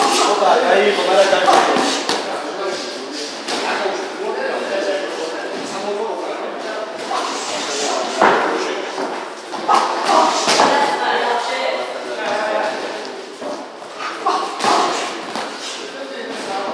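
Voices talking and calling out in a large echoing gym hall, with the sharp thuds of boxing gloves and feet on the ring canvas during sparring, several of them standing out over the voices.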